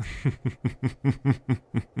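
A man laughing in a deep voice: a run of short, evenly spaced ha-ha pulses, about five a second, each one dropping in pitch.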